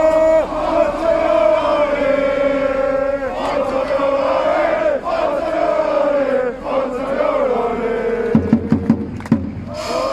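Football supporters chanting in unison, many voices in one held, sung chant that rises and falls in pitch. A quick run of sharp hits comes about eight seconds in.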